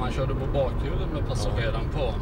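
Inside a SAAB 9-5 Aero cabin while it drives at city speed: a steady low engine and road rumble, with a man's voice talking over it.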